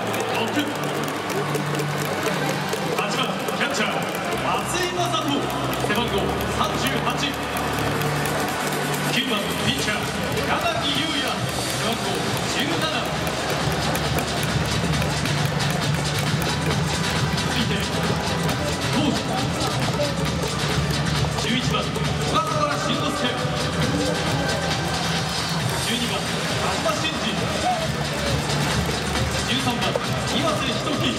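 Stadium public-address music with a steady, held bass, mixed with indistinct voices.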